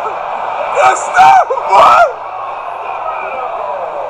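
Men shouting and whooping in celebration, three loud shouts in the first half, over the steady noise of a large stadium crowd.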